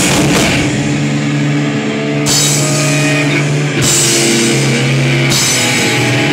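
Live rock band playing loud: electric guitars holding chords over bass and a drum kit, with bright cymbal crashes about every one and a half seconds. No vocals.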